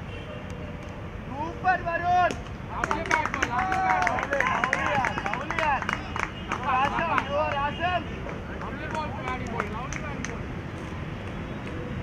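Several people shouting and chattering over one another, loudest from about two to eight seconds in, with a few claps among the voices.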